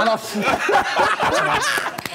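Several men laughing and chuckling in short bursts, mixed with a few spoken words.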